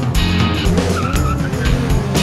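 Loud rock music with guitar, bass and drums. From about half a second in, wavering, gliding sounds run over it.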